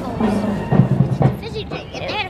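Music with heavy low drumbeats, about three in two seconds, passing in the parade.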